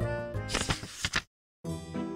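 Background music with a papery page-turn sound effect, followed by a brief total cutout about halfway through, after which music starts up again.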